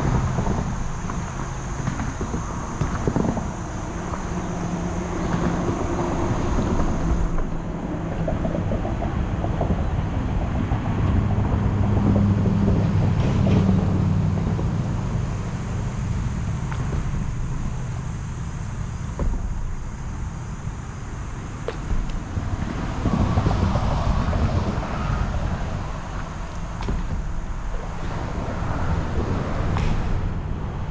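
Steady low rumble of road traffic, with vehicles passing in swells and wind on the microphone.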